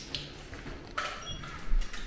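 An electronic key-fob access reader on a glass entrance door gives a short beep about a second in as a fob is held to it, followed by a low thump near the end as the door unlocks and begins to open by itself.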